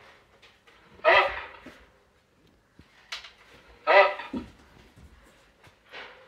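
Two short pitched vocal sounds, about a second in and about four seconds in, each fading out within a second.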